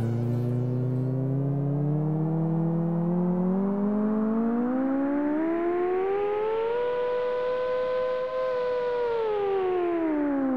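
A single synthesizer tone with overtones glides slowly upward in pitch for about seven seconds, holds briefly, then begins to fall near the end: a siren-like sweep in the closing music.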